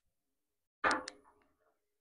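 A single sharp click about a second in, ringing briefly and dying away within half a second, in otherwise dead silence.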